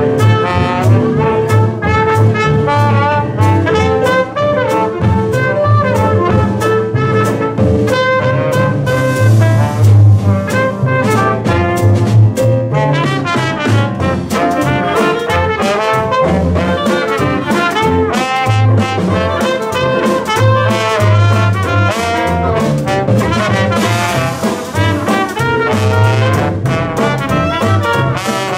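Live Dixieland jazz band playing in ensemble: trumpet and trombone lead over banjo, drums and a tuba bass line on a steady beat, and a clarinet plays in the second half.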